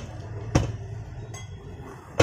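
A single sharp metallic clink about half a second in as the scooter wheel's steel rim and tyre are handled on a concrete floor, with a steady low hum underneath.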